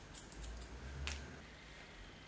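Hairdressing scissors snipping hair: a run of faint, quick snips in the first half-second, then one sharper snip about a second in.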